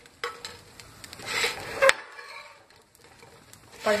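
Steel spatula scraping and tapping on a nonstick tava as fried raw banana slices are flipped over, over a light sizzle of oil. There are several sharp taps and a scrape in the first two seconds, then only the quieter sizzle.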